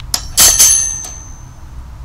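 Wire-mesh cage trap door, released by a remote-triggered solenoid, slamming shut: a light click, then a loud metallic clatter about half a second in, with the wire cage ringing and fading away over about a second.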